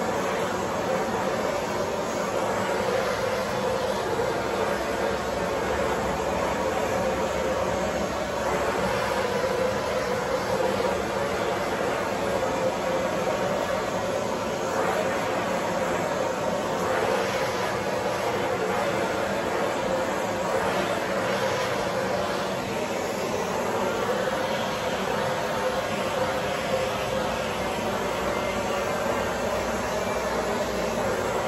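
Hose-fed torch flame blowing steadily as it heat-shrinks window tint film onto a car's curved rear glass.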